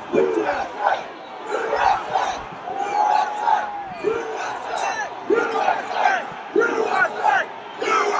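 A large crowd shouting and yelling, many voices overlapping, with single loud yells rising above it several times.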